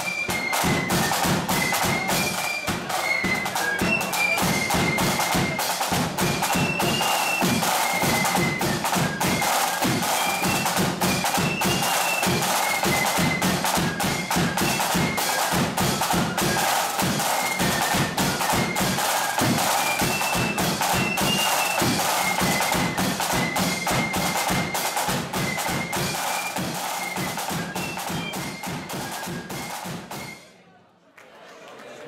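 Marching flute band playing a tune: massed flutes carry a high, shrill melody over fast, dense side-drum patterns and a bass drum beat. The playing eases slightly in loudness near the end.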